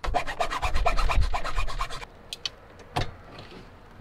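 Flat hand file rasping on the plastic dash panel opening in quick, even strokes, about ten a second, for about two seconds, widening the cut-out so a switch will fit. Then a few light clicks.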